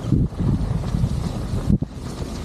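Wind buffeting the microphone of a camera held out by a skier going downhill, a gusty low rumble, with the hiss of skis sliding over packed snow. The rumble drops out briefly near the end.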